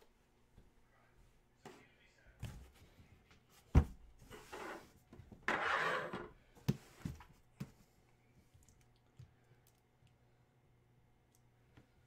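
Cardboard boxes being handled and shifted on a wooden desk: a few knocks, a sharp thunk about four seconds in, then two scraping rustles and some lighter knocks before it goes quiet.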